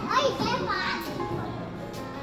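A child's high voice calls out briefly over background music with held notes.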